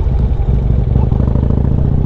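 Harley-Davidson Street Glide's V-twin engine pulling through a right turn, heard from the rider's seat; the engine note strengthens about half a second in and then holds steady.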